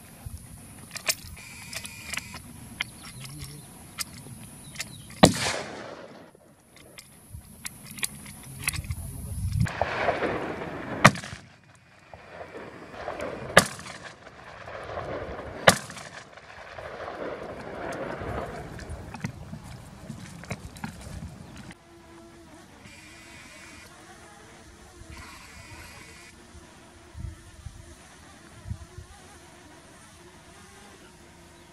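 Rifle shots in open mountain country, four loud ones in the first half, each followed by a long rolling echo that fades over a second or more. The second half is quieter, with a faint steady hum and a couple of soft knocks near the end.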